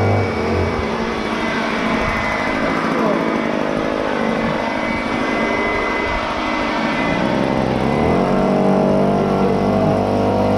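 Handheld leaf blower running at speed. About half a second in its steady hum drops away into a rougher rush of air, and around eight seconds in the pitch rises back up to full speed.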